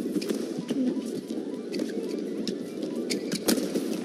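Badminton rally: a quick run of sharp racket-on-shuttlecock hits, several in a row at an uneven pace, over a steady crowd murmur in the arena.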